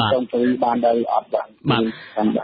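Speech only: a male news reader talking in Khmer on a radio broadcast, with the thin, narrow sound of broadcast audio.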